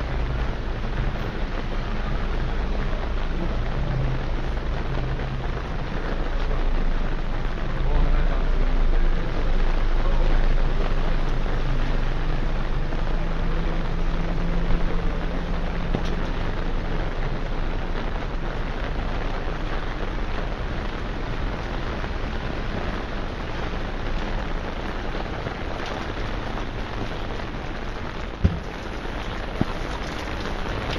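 Steady rain falling on a wet city street and pavement, an even hiss throughout. A low engine hum sits under it for roughly the first half, and a single sharp click comes near the end.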